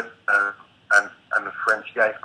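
A man's voice speaking in short, halting syllables over a compressed video-call line.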